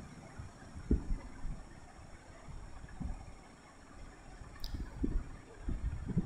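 Wire whisk stirring thick appam batter in a glass bowl: faint, soft stirring noise with a few dull knocks of the whisk against the bowl.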